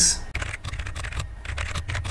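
Typing on a computer keyboard: a quick, uneven run of key clicks as a line of text is typed.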